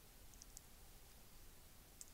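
Near silence: faint room tone with a few tiny clicks about half a second in.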